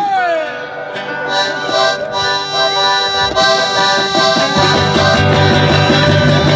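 A band playing live: an accordion holds sustained chords over strummed guitars, and a stepping bass line comes in about four and a half seconds in.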